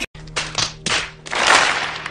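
Crowd noise from an inserted film clip: a few short bursts of clapping, then a longer burst, over a faint steady hum.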